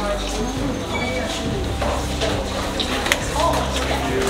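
Indistinct voices of people talking, with no clear words, and a sharp click about three seconds in.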